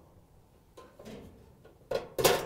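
Flathead screwdriver working against a metal spade terminal on a dryer's high-limit thermostat: a few faint scrapes and knocks about a second in, then a sharp metallic click near the end as the blade levers at the terminal.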